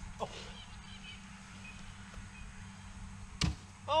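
One sharp thud about three and a half seconds in: a cornhole bean bag landing on a plywood board and knocking off another bag. A faint steady hum runs underneath.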